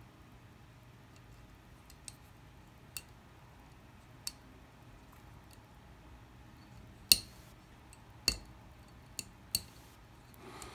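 Clicks of a small spring-loaded part being pressed by hand into an Archon Type B pistol slide: a few faint ticks, then sharper clicks about seven seconds in, the loudest, followed by three more over the next two and a half seconds.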